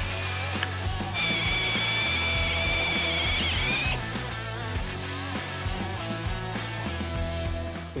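Cordless drill boring out spot welds in a steel roof pillar. The bit cuts with a steady high squeal for about three seconds, starting about a second in, over background music.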